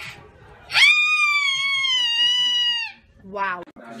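A shrill, high-pitched shriek held for about two seconds, rising sharply at the start, then holding and sagging slightly in pitch before it cuts off. A short, lower voice sound follows near the end.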